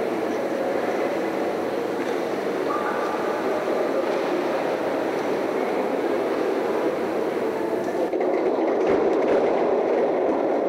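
Steady, even, echoing din of an indoor swimming pool hall, with water noise and room hum and no distinct splash.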